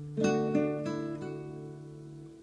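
Acoustic guitar: a D chord is struck about a quarter second in, followed by quick hammer-on note changes on the high string, then left ringing and slowly fading.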